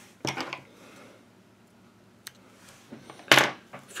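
Small handling sounds of fly tying at the vise: a few light clicks and rustles of fingers and thread. A short, louder rush comes near the end.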